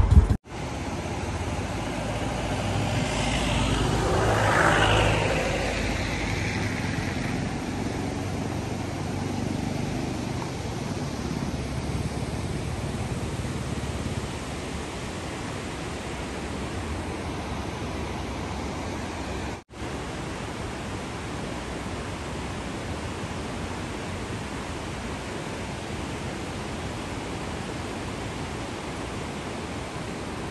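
A motorcycle engine running cuts off within the first half-second. It gives way to a steady rushing noise from a river and waterfall in a gorge, with a vehicle passing by about four to five seconds in.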